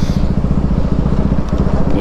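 Motorcycle engine running at a steady speed, its exhaust note a fast, even pulse with no change in pitch.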